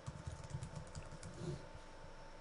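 Typing on a computer keyboard: a quick run of keystrokes that stops about three-quarters of the way through.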